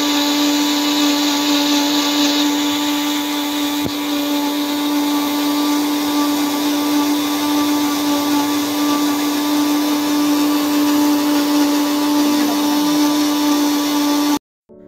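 Small 400-watt bullet-style mixer grinder running at one steady speed, its motor giving a constant pitched hum while the blade grinds a dry ingredient into fine powder in the small jar. A faint click comes about four seconds in.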